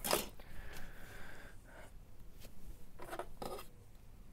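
Handling noises from a plastic model car body shell being worked by hand over a cloth towel: a burst of rustling at the start, a short scraping stretch, then two brief rustles about three seconds in.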